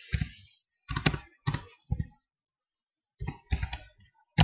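Computer keyboard typing: short runs of keystrokes with a pause of about a second in the middle before a last run of keys near the end.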